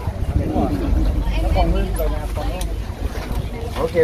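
Several men talking together in conversation, with a steady low rumble of wind on the microphone underneath.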